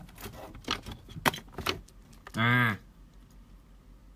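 Handling clatter close to the microphone: about four sharp clicks and small rattles in the first two seconds, then a short 'ah' from a man.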